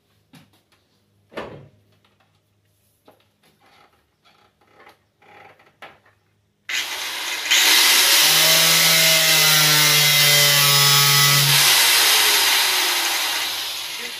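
Faint handling taps and one knock, then about seven seconds in an angle grinder with a cut-off wheel starts and cuts into the Jeep's sheet-metal hood with a loud, hissing whine. It holds steady for a few seconds, then fades near the end as the wheel's pitch falls.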